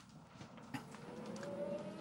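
Faint racing-car engine in old film footage, a thin whine that rises slowly in pitch and grows louder through the second half.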